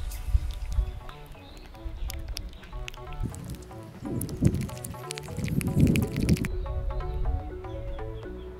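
A spatula stirring sticky slime of clear glue and liquid starch in a plastic bowl, with wet squelching and scraping that are loudest about four and a half and six seconds in. Background music plays throughout.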